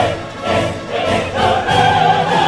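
Opera chorus and soloists singing with full orchestra, many voices with vibrato; the sound dips briefly just after the start and swells louder near the end.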